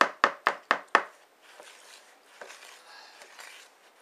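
A wooden spoon beating cake batter in a plastic mixing bowl, knocking against the side of the bowl about four times a second for the first second, then quieter stirring and scraping.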